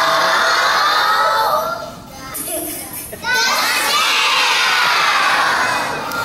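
A large group of children shouting together in two long, drawn-out bursts, with a short break about two seconds in.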